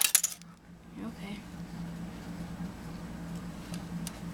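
A quick clatter of small hard objects clicking together at the very start, then a steady low hum with a few faint ticks.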